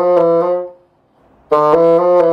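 Bassoon playing a short run of quick notes that ends on a held note, then starting the same run again about one and a half seconds in. It is a fragment of a fast passage practised in small pieces, each blown through to the first beat of the next note.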